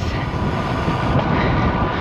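Wind buffeting the microphone of a camera on a moving road bike, mixed with tyre-on-tarmac road noise: a steady low rumble.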